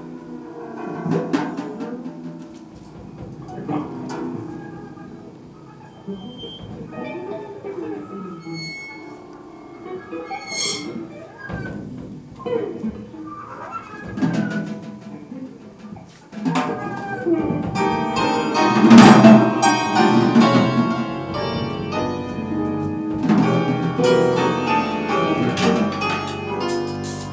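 A small jazz band playing live: bowed double bass, drum kit played on the cymbals with sticks, and a voice in a sparse, quiet passage with scattered ringing strikes. About sixteen seconds in, the whole band comes in louder and fuller, with piano and drums.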